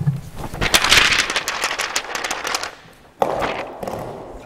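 Dense crackling made of many small, quick clicks, strongest in the first two seconds, then a shorter second burst a little after three seconds in.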